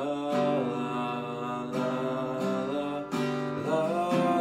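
A man singing with long held notes over slowly strummed acoustic guitar chords.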